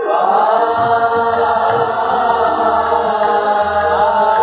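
A group of voices singing together in Hindustani classical style, a line from a composition in Raga Kedar. The voices slide up into one long held note and sustain it steadily, with soft tabla strokes underneath.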